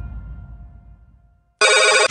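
Electronic music fades out over about a second and a half. Then an electronic telephone ringtone starts suddenly and loudly near the end.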